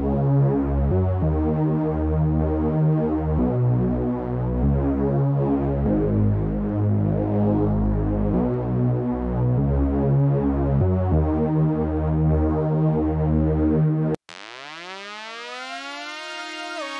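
Synth music played back from Omnisphere: layered sustained synth chords over a deep bass, the chord changing every second or two. About 14 seconds in it cuts off abruptly and a quieter synth enters with tones sweeping upward.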